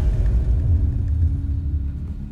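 Deep, steady low rumble from the trailer's sound design, with a faint sustained hum above it. It eases off a little near the end.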